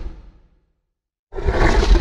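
A loud, rough roar sound effect with a deep low end: one burst fades out in the first half-second, and after a short silence a second one cuts in about a second and a half in.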